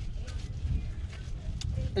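Soapy microfiber wheel brush scrubbing between the spokes of a wet chrome car wheel, a soft swishing with a few light scrapes, over a steady low rumble.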